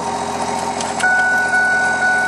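A truck engine running steadily, then about a second in a click and a high steady electronic warning chime from the Ford F-150's dashboard that keeps sounding.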